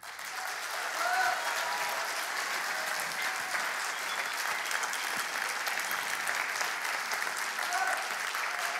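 Audience applauding in a large hall as a song ends: the clapping starts suddenly, builds over about a second and then holds steady.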